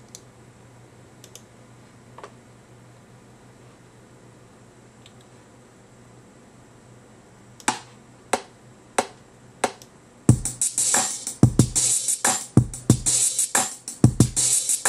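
A low steady hum with a few faint clicks, then four evenly spaced clicks at about 92 beats a minute, a count-in, after which a programmed hip-hop drum-machine beat with hi-hats and kicks starts about ten seconds in.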